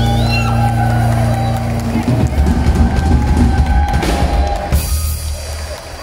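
Live band of cello, electric guitar, bass guitar, drum kit and keyboard playing. The band holds a long chord for about two seconds, then plays a drum-driven passage that stops abruptly about five seconds in, leaving a quieter tail.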